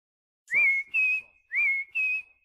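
A person whistling a two-note call twice: a short note that slides up into a held tone, then a slightly higher held tone, each pair lasting under a second.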